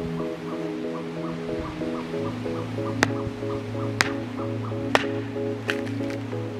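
Background music with a steady, repeating melodic pattern, over which a hatchet knocks sharply into a branch on a wooden chopping block about four times, roughly a second apart, in the second half.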